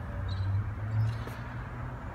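A steady low hum that swells slightly about a second in.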